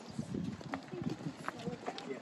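Footsteps of a few people walking on an asphalt road, uneven and irregular, with a few sharper clicks among them.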